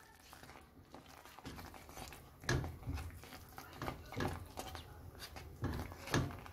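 A spatula stirring thick, pulpy ajvar of peppers and eggplant in a nonstick frying pan: a few soft, irregular squelches and scrapes. They start about two and a half seconds in, after a quiet opening.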